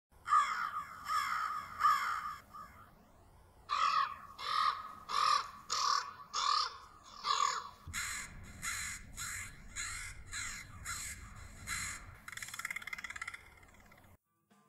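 Crow-family birds cawing: repeated harsh caws in runs of several calls with short pauses between, ending in a quicker rattling stretch near the end.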